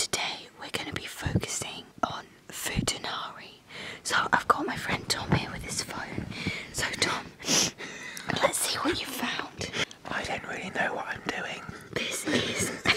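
A person whispering, ASMR-style.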